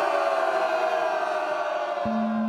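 A group of men's voices chanting together on one long held note.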